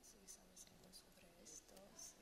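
Faint, hushed speech: two women conferring quietly, away from the microphone, with soft sibilant hisses.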